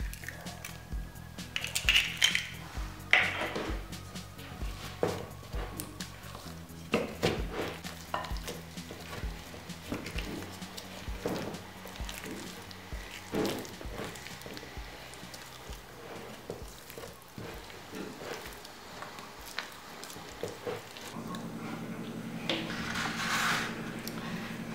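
Wooden spoon stirring tapioca dough in a glass mixing bowl, with irregular knocks and scrapes of the spoon against the glass, over steady background music.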